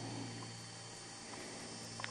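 Quiet room tone: a steady low hum and faint hiss, with no distinct sound events.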